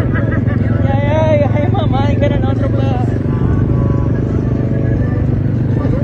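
A vehicle's engine running with a steady low drone, with indistinct voices over it.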